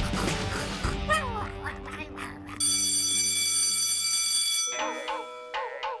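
Cartoon soundtrack: comedic background music with sound effects, including a held bright chime-like tone in the middle and then a series of short wavering blips, about two a second, near the end.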